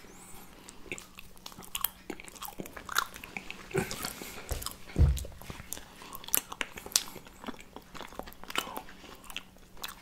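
Two people biting and chewing iced gingerbread (Lebkuchen) close to the microphone, with many small crisp crackles. One low thump comes about five seconds in.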